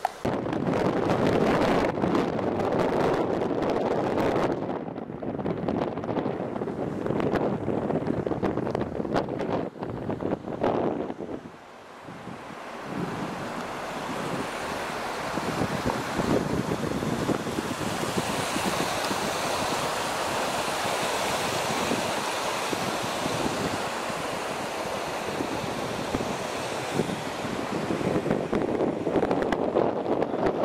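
Muddy floodwater rushing down a swollen ravine and through a road culvert, a steady rush of water, with gusts of wind on the microphone. The sound dips briefly about twelve seconds in, then turns into a steadier, hissier rush.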